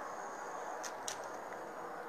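Steady low background noise with two faint clicks about a second in.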